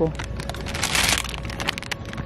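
Crinkly plastic candy bags rustling and crackling as they are grabbed off a shelf and stacked.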